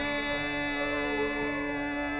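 Hindustani classical music: a steady drone sounds throughout, with a plucked stroke at the start and a melodic line that wavers in pitch above it around the middle.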